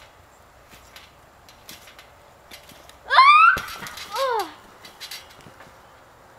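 A girl's high, loud yelp rising sharply in pitch about three seconds in, then a shorter cry falling in pitch, as she bounces up off a trampoline and comes down. Faint taps and creaks from the bouncing come before.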